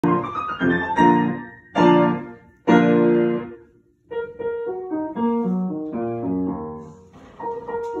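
Piano being played: several loud chords struck and left to ring in the first three and a half seconds, a brief pause about four seconds in, then a softer line of single notes.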